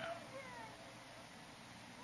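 Faint bird calls: a few short, downward-sliding whistled notes in the first second, then only a quiet background hum.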